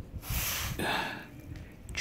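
A person's breath close to the microphone: two short breathy puffs, the first about a quarter second in and the second around one second.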